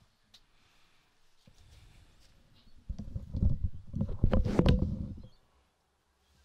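A low, irregular rumble that grows about a second and a half in, is loudest from about three to five seconds in with a few sharp clicks, and then dies away.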